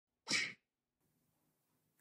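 One short, sharp vocal burst from a person about a quarter second in, lasting about a third of a second, with a hissy top. Faint room tone follows.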